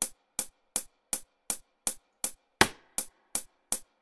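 Soloed hi-hat from a programmed drum track, playing a steady straight eighth-note pattern at about 2.7 hits a second. A couple of the hits ring a little longer than the rest.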